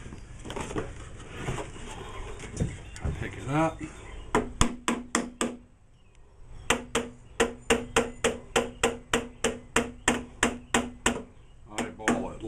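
Cordless drill driving screws into the wooden landing board of a top bar hive: a short burst of sharp clicks about four seconds in, then a steady run of clicks, about four a second, for several seconds.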